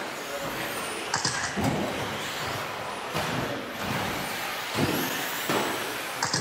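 2WD electric RC buggies racing on an indoor track: a steady wash of high motor whine and tyre noise, with a few short knocks from the cars landing or hitting the track.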